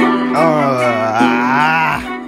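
Hip-hop beat with a long, low, wavering vocal note laid over it, lasting about a second and a half, its pitch dipping and then rising again.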